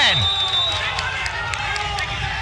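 Indistinct shouting voices of players celebrating a goal, over steady background noise.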